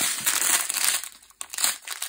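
Plastic packaging of diamond-painting drill bags crinkling as a hand handles a wrapped strip of them. The crinkling is steady through the first second, then comes in shorter crackles.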